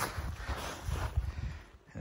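Footsteps crunching in snow, a run of uneven steps that fade out near the end.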